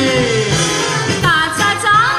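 Konkani tiatr comedy song sung live with instrumental accompaniment: a held sung note slides down and ends, and about a second and a half in a woman's voice starts the next line.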